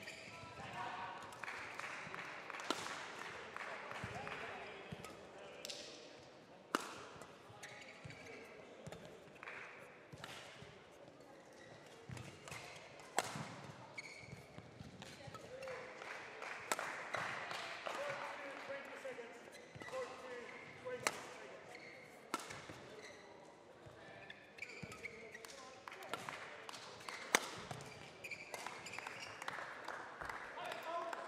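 Badminton rally: rackets striking the shuttlecock make sharp clicks every second or two, the loudest at scattered moments. Footwork on the court floor runs between the hits, with voices in the background.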